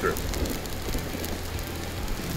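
Raw ground-chicken meatballs sizzling in olive oil on a Blackstone flat-top griddle at medium heat: a steady, even crackle of frying.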